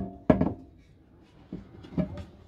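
Hinged sink cover being swung over a kitchen sink, with a sharp knock just after the start and two smaller clicks later on.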